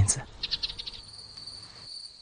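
Crickets chirping: a few quick chirps, then a steady high trill from about a second in.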